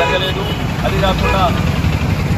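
A man's voice speaking in short bursts over a steady low rumble of road traffic.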